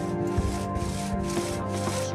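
Two-man saw cutting through a log, its back-and-forth strokes coming about two and a half times a second, over sustained background music.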